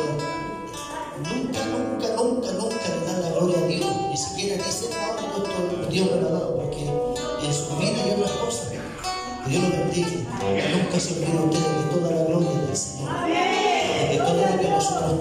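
Music: a man singing into a microphone over guitar accompaniment.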